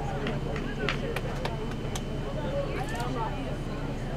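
Soccer players and spectators calling out at a distance, over a steady low hum of open-air background noise, with a few short, sharp taps in the first two seconds.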